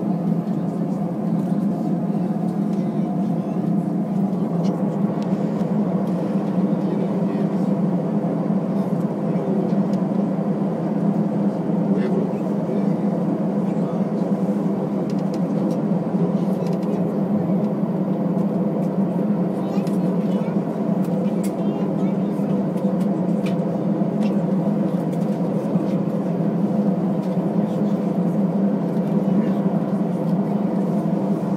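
Steady low hum of an Airbus A320's engines at taxi idle, heard from inside the passenger cabin.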